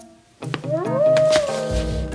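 A howl-like animal cry: one long call that rises in pitch, then holds and slowly sinks, over background music. A low rumble comes in near the end.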